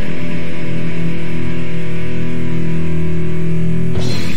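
Oi/street punk band holding one sustained electric guitar chord that rings on without drums, the closing chord of a song, which ends with a final hit right at the end.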